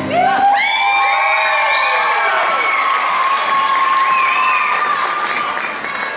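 Audience applauding and cheering, with many high-pitched shouts and whoops, breaking out just as the routine's music ends.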